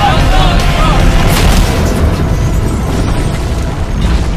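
An old rusted-out car crashing and tumbling down a rocky canyon slope, a loud continuous booming rumble, over background music.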